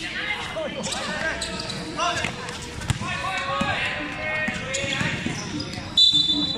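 A basketball bouncing on a hard court during play, with a sharp knock about halfway through, over the shouting and chatter of players and spectators.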